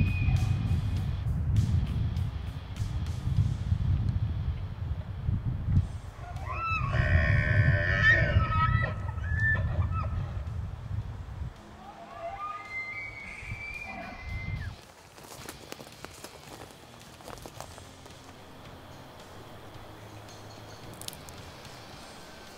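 Elk calls, high and whistling, with several pitches that rise and bend: a longer run about six to ten seconds in and a shorter one about twelve seconds in. They play over low background music that stops near twelve seconds.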